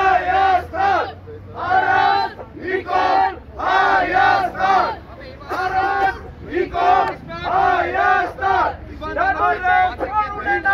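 Protest crowd shouting a rhythmic chant, loud short phrases of a few syllables each, repeated about once a second with brief gaps.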